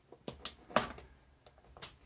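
Cardboard box being handled as its top flap is opened: a few short, sharp taps and scrapes of cardboard, the loudest a little under a second in and another near the end.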